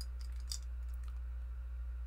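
Faint clicks of a plastic-and-metal Hot Toys Iron Man Mark V action figure being turned over in the hands, two of them about half a second apart near the start, over a steady low hum.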